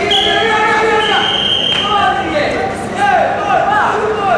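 Coaches and spectators shouting over one another in a large, echoing hall, with a whistle sounding twice, long and high, in the first two seconds.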